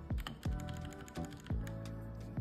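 Keychron K2 mechanical keyboard with red linear switches being typed on, a quick irregular run of key clacks over background music with a steady beat.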